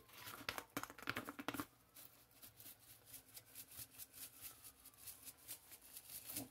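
Seasoning shaken from a shaker over pasta in a skillet. A quick run of rattling shakes in the first second and a half gives way to faint, even taps about three a second.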